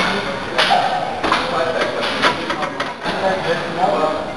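Indistinct voices talking, with several sharp knocks, the clearest about a second and two seconds in.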